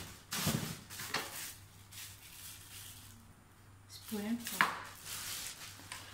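Thin plastic carrier bag rustling and crinkling in bursts as it is lifted out of a suitcase and set aside, with clothes being handled. A brief vocal sound comes a little after four seconds in.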